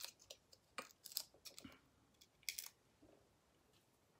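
Faint rustles and a few light clicks and taps of small cardstock pieces being handled by hand, with the sharpest clicks about a second in and about two and a half seconds in.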